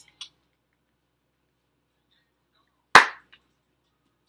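A single loud, sharp impact about three seconds in, followed a moment later by a faint click; the rest is near silence.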